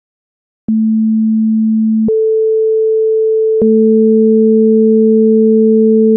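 Electronically generated pure sine tones: a 220 Hz tone starts a little under a second in, gives way to a 440 Hz tone an octave higher, then both sound together as an octave. Each change is marked by a slight click.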